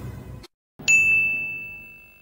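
The tail of music fades and cuts off, and about a second in a single bright ding sound effect sounds: one clear high ring that dies away slowly.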